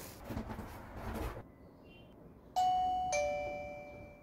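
Plug-in wireless doorbell receiver chiming a two-note ding-dong about two and a half seconds in, a higher note and then a lower one, fading away. Before it there is a little rustling of handling.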